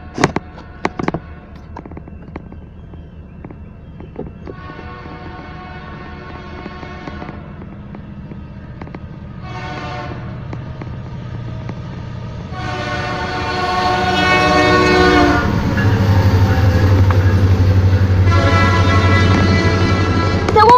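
Norfolk Southern freight locomotive's air horn sounding for the grade crossing as it approaches, growing louder: a long blast about four seconds in, a short one near ten seconds, then long blasts near thirteen and eighteen seconds. From about sixteen seconds the locomotive's heavy low rumble takes over as the train reaches and passes the crossing.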